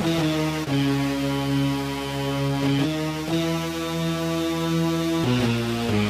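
Hip-hop track intro: sustained synthesizer chords held without drums, shifting to a new chord every two seconds or so.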